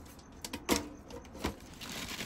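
Hands rummaging through a plastic storage bin packed with plastic bags and newspaper: rustling and handling noise with a few sharp knocks, the loudest a little under a second in.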